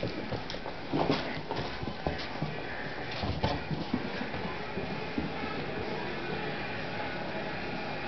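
Dogs' claws and paws clattering on a tile floor as they scramble in play, with a scatter of quick taps and knocks in the first half that thin out later.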